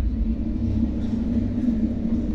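Steady low rumbling drone with a held low hum, without speech.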